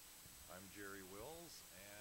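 Faint man's voice speaking, too quiet and muffled for words to be made out.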